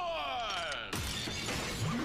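Transformation sound effects from a Super Sentai henshin scene: a falling pitched sweep, then a sudden shattering crash about a second in, over background music.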